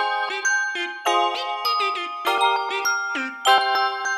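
A short lo-fi music sample of bright, bell-like keyboard notes and chords, each struck note ringing briefly, with short breaks between phrases. It is played through the Waves Retro Fi and Lofi Space plugins together.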